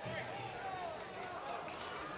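Faint people's voices calling out over a steady background murmur.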